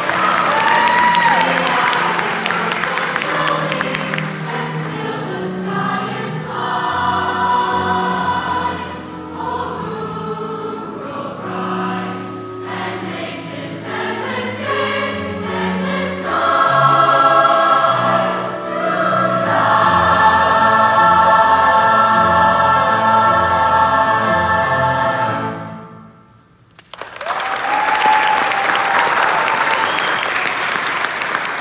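Large mixed choir singing with piano, building to a long held final chord that cuts off about 26 seconds in. After a brief moment of quiet the audience applauds for the last few seconds.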